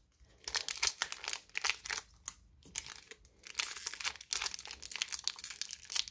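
Thick foil booster-pack wrapper crinkling and crackling in the hands as fingers work at tearing it open, with a brief lull about two seconds in.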